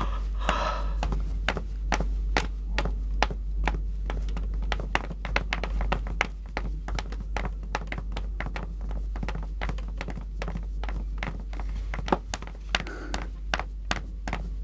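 Footsteps clicking on a hard floor, several steps a second, over a steady low hum.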